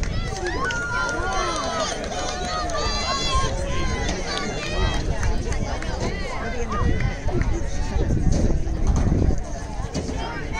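Overlapping voices of spectators talking at a track meet, not picked out as clear words, over a steady low rumble.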